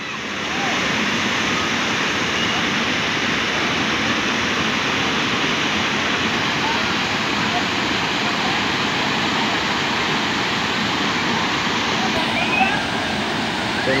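A waterfall and the shallow river water pouring over the rock ledges below it make a steady, unbroken rush of water.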